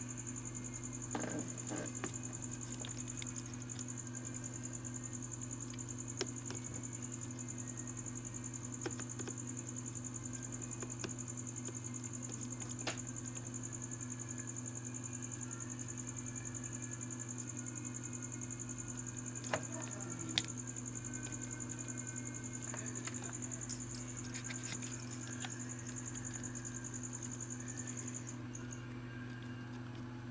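Steady low electrical hum under a thin high-pitched whine that stops near the end, with scattered faint clicks and ticks and two sharper clicks about two-thirds of the way through.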